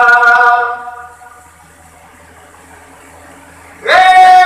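A man's voice singing a long held note through a microphone and loudspeakers, dying away about a second in; then a pause with only a low steady hum and faint hall noise, before a new sung note starts with an upward slide just before the end.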